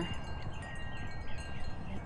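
Wind chimes ringing, several steady high tones overlapping and hanging on.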